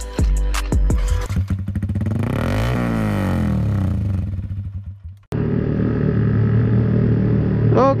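Intro music beats give way to a swelling sweep of gliding pitches that fades out. Near five seconds in, a sudden cut brings in a motorcycle engine running steadily under way, heard from on board.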